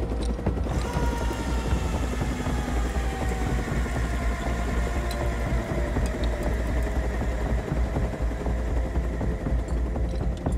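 Sea King helicopter hovering close overhead: a heavy, steady low rumble of rotor and downwash, with a turbine whine that slowly falls in pitch.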